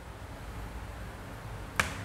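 Chalk writing on a blackboard: faint scratching, with one sharp tap of the chalk near the end.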